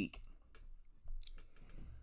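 A few faint clicks in a pause between words, with a faint low background haze.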